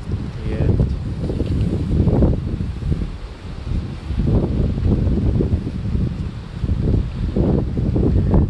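Wind buffeting the microphone: a loud, low, rumbling noise that swells and eases in gusts.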